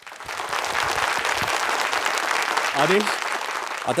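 Studio audience applauding, a dense steady clapping that comes in abruptly and holds throughout, with a brief rising voice about three seconds in.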